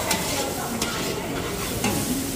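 Chili, garlic and fermented soybean paste sizzling in a metal wok while a metal spatula stirs it, with a few sharp scrapes of the spatula against the wok.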